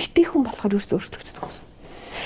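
Speech only: a person talking in short phrases with brief pauses, trailing off near the end.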